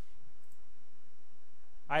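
A couple of faint computer mouse clicks over a quiet background hiss with a faint steady high tone; a man starts speaking near the end.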